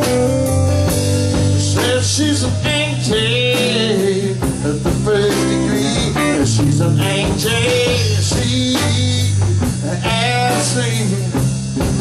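Live rock and roll band playing loudly and without a break: electric guitars over a drum kit's beat.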